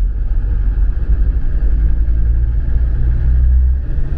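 Land Rover Defender Td5 five-cylinder turbodiesel and road noise heard from inside the cab while driving, a steady low rumble with the engine note shifting slightly as the revs change. There is no knocking from the suspension.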